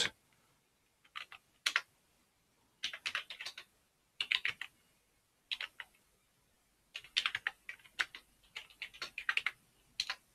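Computer keyboard typing: short bursts of keystrokes separated by pauses, then a longer, quicker run of keys near the end.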